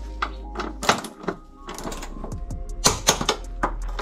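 Hand ratchet clicking in short, uneven runs of ticks while crossmember bolts are turned.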